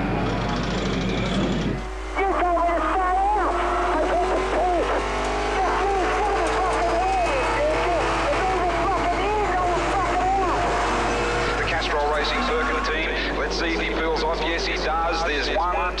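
In-car sound of a Holden V8 touring car at racing speed, the V8 engine note rising and falling over and over with throttle and gear changes, starting about two seconds in.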